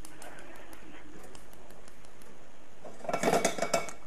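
Chopped garlic sizzling faintly in oil in a nonstick wok on a gas burner, then, about three seconds in, a short louder burst of crackling and scraping as a spatula stirs it in the pan.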